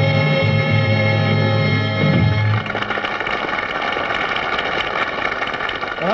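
A rock band with vocals ends a song on a long held final chord, which stops about two and a half seconds in. Studio audience applause follows.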